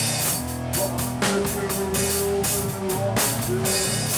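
Heavy rock band playing live: a drum kit with repeated cymbal crashes and drum hits under held electric guitar notes.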